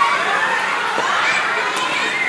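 A group of children shouting and cheering together, many voices overlapping.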